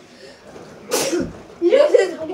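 A child's short, sharp, breathy vocal burst about a second in, then a child's voice near the end.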